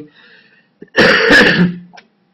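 A man loudly clears his throat once, about a second in, ending in a short hum.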